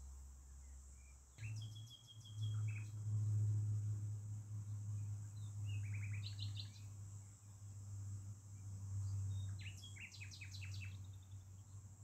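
A songbird giving three short bursts of rapid chirping notes, over a steady high insect drone. A loud low hum runs underneath from just over a second in.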